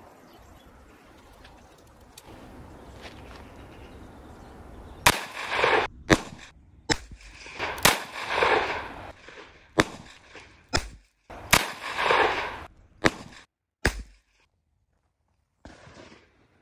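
A revolver firing .38 Special rounds: a series of sharp shots about a second apart, starting about five seconds in, each followed by a short ringing echo. The last couple of shots are fainter.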